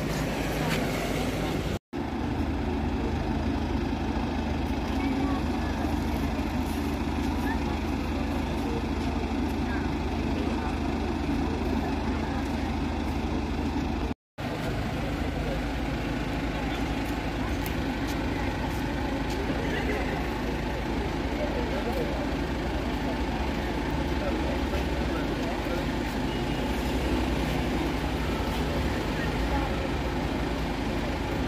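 A BMW 3 Series sedan's engine idling steadily, a continuous low drone, with people talking around it. The sound drops out briefly twice.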